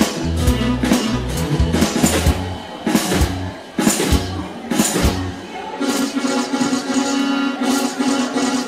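Live rock band playing an instrumental passage of a 1960s-style song: drum kit hits over electric bass and guitar. About six seconds in the bass and drums drop back and a held chord sustains under the guitar.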